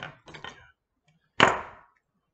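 A hard object striking once on the fly-tying bench: a single sharp knock with a short ringing tail, about one and a half seconds in.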